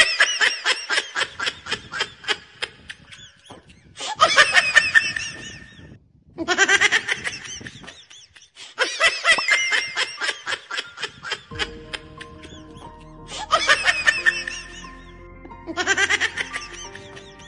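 A laughter sound effect: bursts of rapid, high-pitched 'ha-ha-ha' laughing, repeated five or six times with short gaps, over background music that becomes clearer about two-thirds of the way in.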